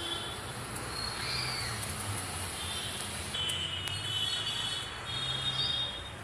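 Outdoor background noise: a steady low rumble with short high chirping calls, one rising and falling about a second in and a few more in the second half.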